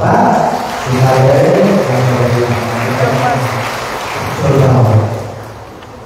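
Indistinct talking: a man's voice close by over a general hubbub of voices. The hubbub dies down near the end.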